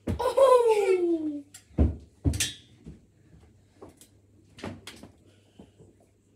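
A child's voice calls out with one long falling pitch, then a white stair safety gate is swung shut: two loud knocks about two seconds in, followed by lighter clicks and taps as it latches.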